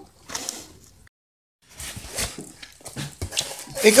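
Cardboard box and paper wrapping being handled and torn open by hand: scattered rustles, scrapes and small knocks, with a brief complete silence about a second in.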